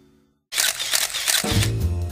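A rapid run of single-lens reflex camera shutter clicks starts suddenly about half a second in. Music with a deep bass line comes in about halfway through.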